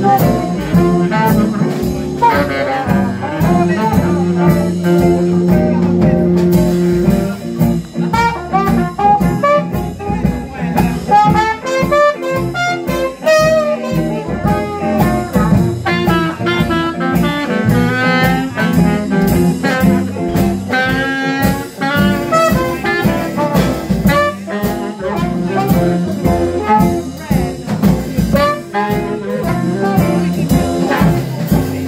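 Small Dixieland jazz band playing live: baritone saxophone and trumpet over double bass, guitar and drums, with a steady beat and a long held low horn note a few seconds in.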